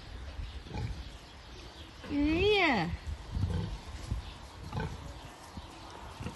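Domestic pig grunting and snuffling as it walks out onto the dirt, in short, low, rough sounds. A woman's brief wordless call, rising then falling in pitch, comes about two seconds in.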